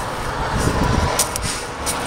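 Steady low rumble of nearby freeway traffic, with a few faint ticks in the second second.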